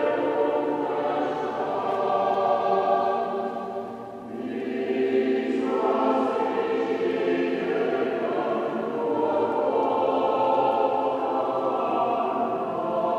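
Choir singing a slow sustained hymn in long held phrases, with a brief pause between phrases about four seconds in.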